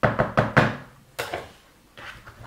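Plastic slotted spatula knocked against the rim of a plastic mixing bowl: four quick knocks, then two more a little over a second in.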